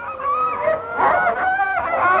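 Hunting horn blown in long, wavering honks, with no clear tune.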